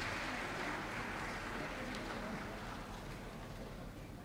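Audience applause, slowly dying away.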